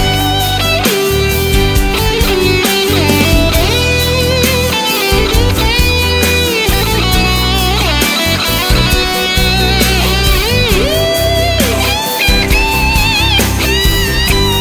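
Instrumental passage of a chanson: an electric guitar plays a lead line with bent notes and vibrato over bass, drums and backing instruments, with no vocals.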